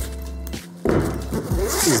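Zipper on the side pocket of a Tenba Cineluxe camera bag being pulled open, starting about a second in and growing louder toward the end, over background music.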